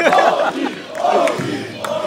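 Concert crowd chanting and shouting together in unison, loud at first and again about a second in, then easing off.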